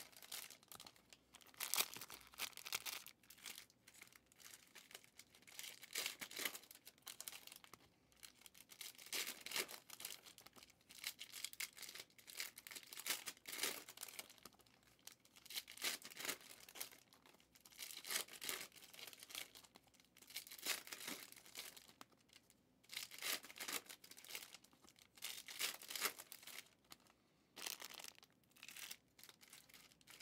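Foil trading-card pack wrappers from 2023 Elite football hobby packs being torn open and crinkled, with cards handled, in short quiet bursts every second or two.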